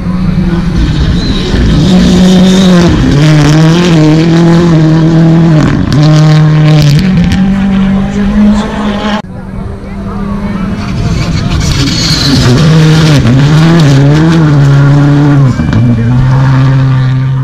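World Rally Car engines at high revs, passing on a gravel stage. The engine note holds, dips briefly and steps in pitch with gear changes and throttle lifts. About nine seconds in the sound breaks off and a second full-throttle run begins.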